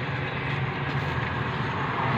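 Steady running noise of a vehicle heard from inside its cabin: a low engine hum under an even rush of road noise.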